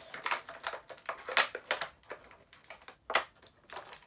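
Clear plastic packaging crinkling and crackling in irregular handfuls as it is worked open by hand, with a couple of sharper crackles.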